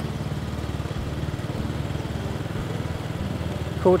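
Small motorbike engine running steadily at low cruising speed: an even low hum with a fast, regular pulse.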